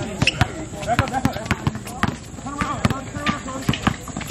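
Basketball bouncing repeatedly on an outdoor hard court as it is dribbled, a string of sharp bounces, with players' voices calling out around it.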